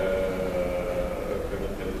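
A man's long, steady hesitation vowel ("eeh") held through a pause in the middle of his sentence, its pitch drifting slightly down.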